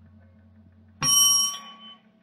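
Radio-drama sound effect of a room-sized computer: a faint electronic hum, then about a second in a single bright bell-like ding that rings and fades over about a second. It is the machine's signal just before it gives its answer.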